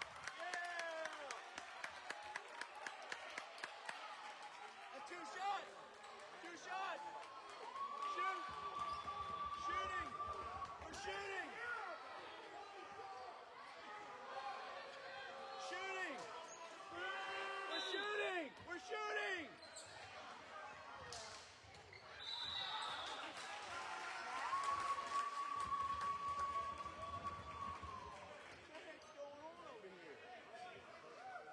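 Game play on a hardwood basketball court: a basketball being dribbled in a quick even rhythm in the first few seconds, and sneakers squeaking on the floor throughout, with voices from the gym.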